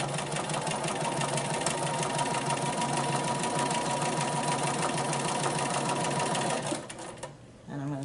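Bernina 440 QE domestic sewing machine stitching fast and steadily during free-motion ruler quilting, then stopping about seven seconds in.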